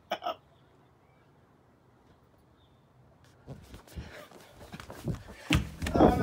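The last bursts of a man's laugh, then about three seconds of quiet, then a growing run of knocks, bumps and thumps from a handheld phone being moved about quickly, loudest near the end.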